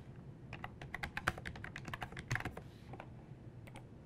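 Computer keyboard typing: a quick run of faint keystrokes from about half a second in until about three seconds, then two more clicks near the end.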